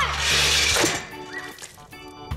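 A guillotine blade drops and cuts through a plastic jug of laundry detergent: a crash right at the start that trails off in under a second, over background music.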